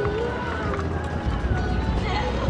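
Wind rumbling on the microphone outdoors, with faint voices in the distance.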